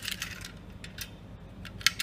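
Light metallic clicks and handling noise as a brass spring balance and its steel ring are turned over in the hands, with a sharper click near the end.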